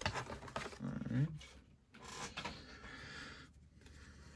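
Rustling and scraping of packaging being handled, with one short rising vocal sound, like a grunt, about a second in.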